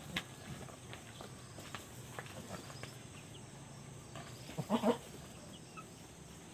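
A goat bleats twice in quick succession about four and a half seconds in. Before it, a few light scuffs and clicks of footsteps in flip-flops on dirt.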